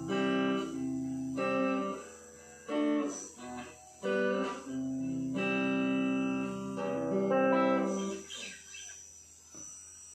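Electric guitar playing a series of clean chords, each struck and left ringing for about a second, the sound thinning out and dying away over the last couple of seconds.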